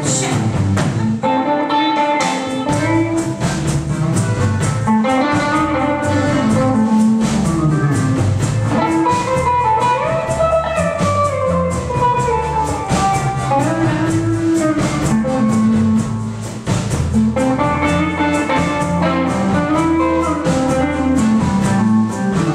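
Live blues band playing an instrumental passage: a semi-hollow electric guitar plays bending lead lines over bass and a steady drum-kit beat.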